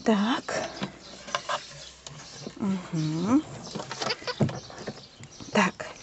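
A woman's wordless, drawn-out vocal sounds, each dipping and rising in pitch, twice and then once briefly near the end, with light rustling and small clicks as newborn rabbit kits are handled and set into a straw-and-fur nest box.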